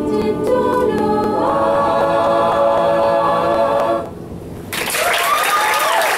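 An a cappella group of mixed voices sings the last phrase, then holds a final chord that cuts off about four seconds in. After a short pause the audience breaks into applause with whoops.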